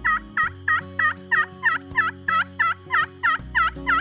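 Pot-style friction turkey call worked with a striker, giving a long, even run of yelps at about four a second, each note dipping in pitch and rising back.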